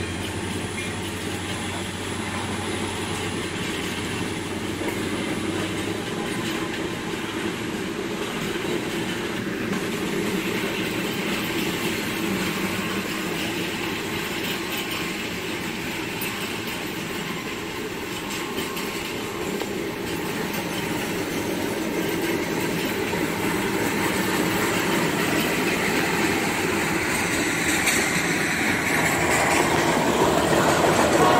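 A freight train's cars rolling past: a steady rumble and clatter of steel wheels on the rails, growing louder over the last several seconds.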